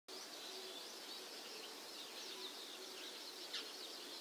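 Faint birds chirping: a run of short high calls over a steady background hiss, a little stronger about three and a half seconds in.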